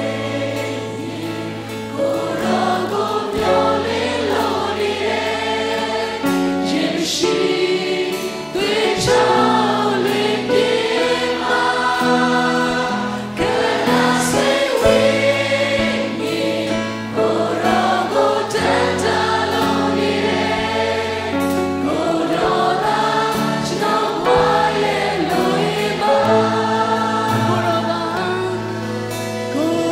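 Worship team performing a gospel song: several voices singing together over acoustic guitars, with sustained low notes underneath.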